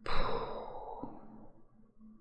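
A man's long sigh: a breathy exhale that starts suddenly and fades away over about a second and a half.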